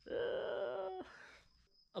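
A man's drawn-out groan of disgust, held flat for about a second and then trailing off into breath.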